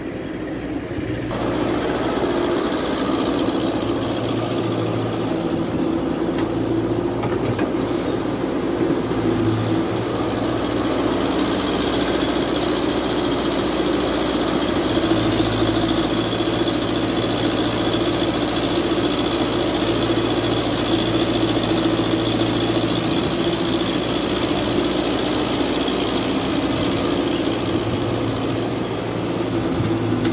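Diesel engines of a wheeled excavator and a KAMAZ dump truck running steadily while the excavator loads garbage into the truck; the sound grows louder about a second in and then holds level.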